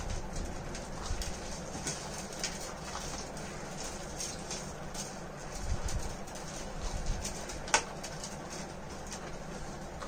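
Faint mouth-eating sounds as people eat food off plates without hands: soft slurping, sucking and smacking in short scattered clicks over a steady low room noise, with one sharper click about three-quarters of the way through.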